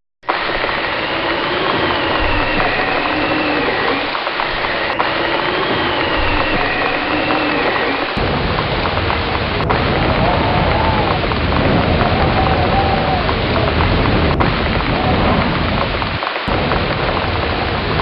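Steady heavy rain falling on the forest and the shelter roof, with a slow, wavering tone above it. A deeper rumble joins about eight seconds in.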